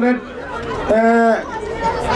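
A man's voice into a handheld microphone, reciting in a chant-like, sung style on steady held pitches, with one long held note about a second in.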